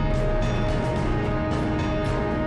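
Closing theme music of a TV news bulletin playing under the end credits, with held notes over a full, dense low end.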